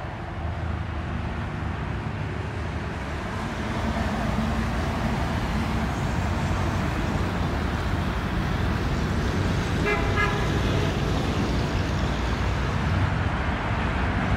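Road traffic noise that grows louder about four seconds in, with a short car horn toot about ten seconds in.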